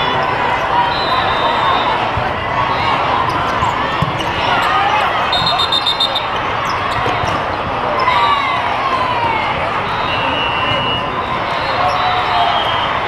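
Indoor volleyball play in a large hall full of crowd chatter: ball hits and sneakers squeaking on the court, with short, high referee whistle blasts, the clearest about five seconds in.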